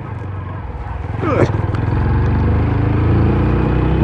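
TVS Apache RTR single-cylinder motorcycle engine running at low speed on a rough road, then pulling harder, its note growing louder from about a second in.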